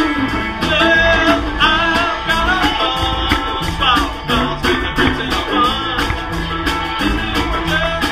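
A live country band playing: guitar and a steady bass beat, with a wavering melody line bending over the top.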